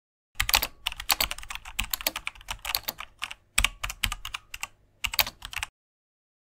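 Computer keyboard typing sound effect: a fast run of key clicks with a few brief pauses, stopping shortly before the end.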